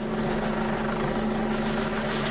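Police helicopter flying overhead, its rotor and engine making a steady, even sound.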